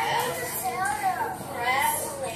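Children's voices talking, high-pitched, rising and falling in pitch without clear words.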